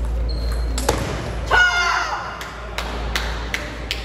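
Table tennis rally ending with a sharp hit of the ball about a second in, then a short shout from a player. A run of light ball clicks and bounces follows.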